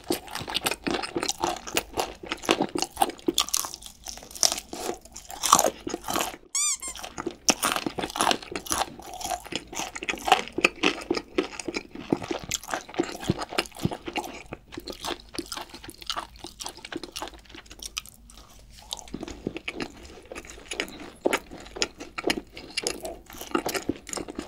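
Close-miked crunching and chewing of crispy cheese-seasoned fried chicken: irregular crackly bites and wet chewing. There is a softer stretch of chewing about two thirds of the way through.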